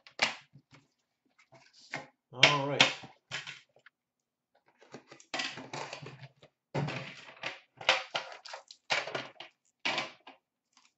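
Hands handling a metal Upper Deck Premier card tin and its packaging, with a series of short knocks, clicks and rustles as the tin is set on a glass counter and a foil pack is taken out. A few brief murmured voice sounds come between them.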